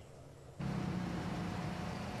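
Steady outdoor street background noise with a low hum, coming in about half a second in after a brief quieter moment.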